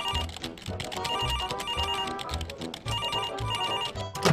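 A telephone ringing in repeated short double rings, over background music with a steady low beat.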